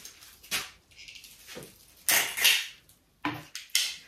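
Spray rose stems being stripped of leaves and thorns with a hand-held stripping tool: a handful of short scrapes, the longest and loudest about two seconds in.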